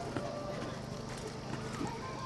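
Hoofbeats of a horse cantering on a sand arena: a few dull thuds, one about a quarter second in and a pair near the end, under background voices.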